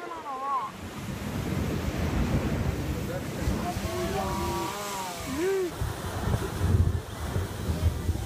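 Sea surge rushing up through a rocky blowhole and bursting out as spray: a steady wash of churning water that swells loudest near the end, with wind buffeting the microphone.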